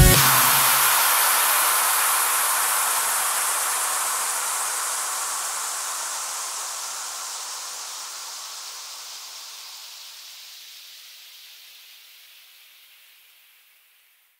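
End of an electronic dance track: the beat cuts off and a long hissing noise wash, a crash or white-noise effect, fades slowly away. The low end goes first and the hiss is gone near the end.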